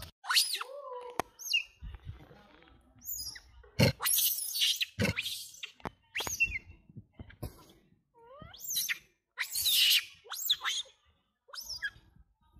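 Macaques calling: a series of short, high squeaks and chirps that sweep down in pitch, a couple of lower whining glides, and a few harsher, noisy screeches about four seconds in and again near ten seconds.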